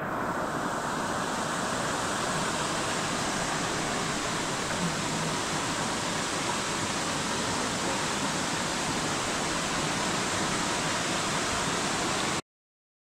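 Steady rushing of water from a small waterfall spilling into a pool, an even hiss with no break.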